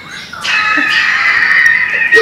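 Loud, high-pitched shrieking laughter from a man, starting about half a second in and held as one long squeal.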